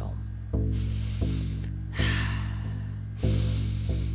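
A person taking two deep, exaggerated breaths, the second louder, in a paced breathing exercise, over soft guitar background music.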